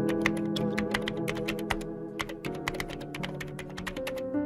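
Fast typing on a computer keyboard: a quick, continuous run of keystroke clicks, heard over background music with held notes.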